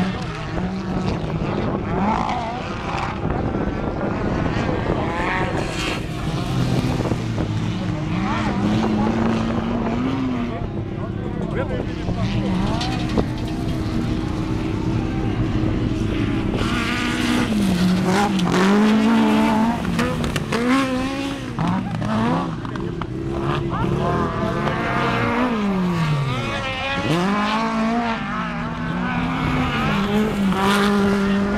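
Several autocross special (buggy) race engines revving up and down as the cars accelerate and brake around a dirt track, their overlapping pitches rising and falling throughout.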